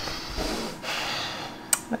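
A woman's long, breathy exhaled sigh that fades away over about a second and a half, with a soft bump at the start and a short click near the end.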